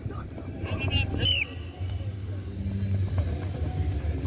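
Distant shouts of rugby players during training drills, with a couple of brief calls about a second in, over a low, uneven rumble.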